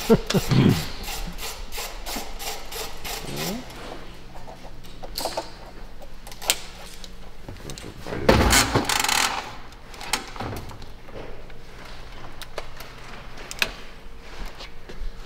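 Handling noises at an assembly bench: a run of small clicks and knocks, then scattered single clicks. About eight seconds in comes a louder rubbing scrape lasting about a second.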